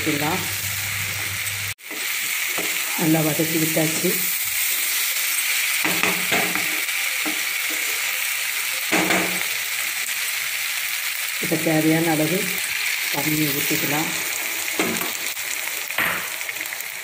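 Green capsicum pieces and spice powder sizzling in hot oil in a non-stick frying pan as they are stirred with a wooden spatula. The sizzle is steady, with a brief break about two seconds in.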